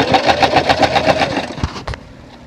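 Electric sewing machine running and stitching through fabric in a rapid, even rhythm, then stopping about a second and a half in.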